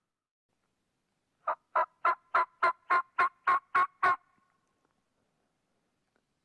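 A run of about ten evenly spaced hen yelps on a turkey call, about four a second, ending about four seconds in.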